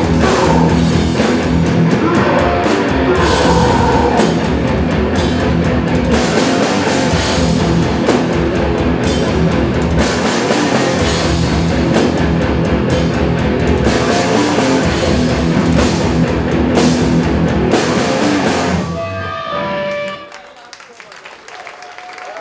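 A live hardcore punk band plays loud, with drum kit and distorted guitars. Near the end the band stops, a ringing note lingers briefly, and the sound falls much quieter.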